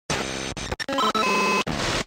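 A rapid collage of short sound-effect and music snippets, each cut off abruptly after a fraction of a second. A held high tone sounds through the middle. It plays as an animated intro sting.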